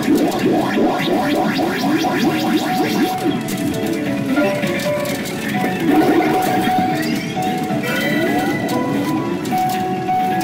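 Pachinko machine music and sound effects playing during a reach, with rising sweep effects about three-quarters of the way through.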